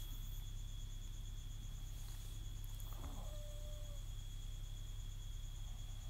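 Quiet room tone: a steady low electrical hum and a faint high whine, with one faint short sound about three seconds in.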